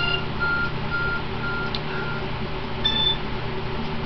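Mobile phone ringtone: a run of short electronic beeps at one pitch, about two a second, with a higher beep near the end, over a steady low hum.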